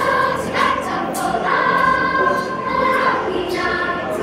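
Elementary-school children's choir singing, with one note held for over a second near the middle.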